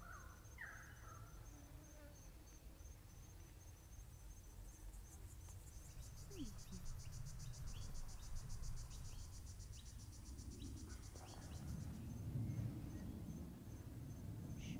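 Faint insects trilling outdoors: a steady, evenly pulsed high chirp throughout, joined about five seconds in by a louder, fast buzzing trill that stops about six seconds later. A few short falling chirps sound over it, and a low rumble comes up near the end.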